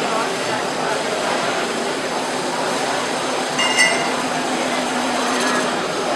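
A wood lathe turning a large bowl blank while a gouge cuts it, a steady rough hiss of shavings peeling off the spinning wood over the lathe's hum. A brief high squeak sounds a little past halfway.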